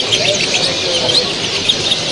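Many caged finches chirping and calling, short high chirps overlapping throughout, over a steady background murmur of hall noise.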